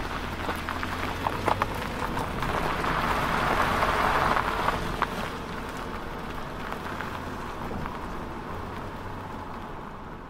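Car sound effect for an outro: a low engine hum under a rushing noise with scattered crackles. The noise swells about three to five seconds in, then fades.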